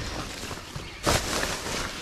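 Rustling and crinkling of a reusable fabric shopping bag and plastic bags being handled inside a plastic wheelie bin, with a louder rustle about a second in.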